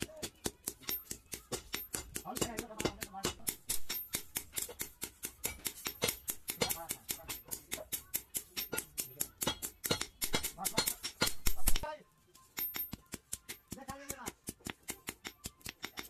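Hand hammer striking a red-hot steel sword blade on an anvil in a rapid, even rhythm, about four to five blows a second. The blows break off for a moment just before the last quarter, then resume.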